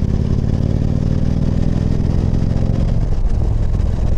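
Victory touring motorcycle's V-twin engine running at road speed under wind rush, its note dropping slightly about three seconds in.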